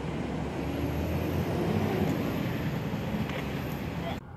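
A steady rumbling noise of a passing motor vehicle, swelling slightly about halfway through.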